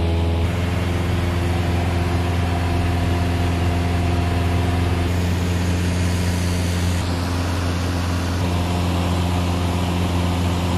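Cessna 172 Skyhawk's single piston engine and propeller in flight, heard from inside the cabin as a loud, steady drone with a strong low hum; the tone shifts slightly about half a second in.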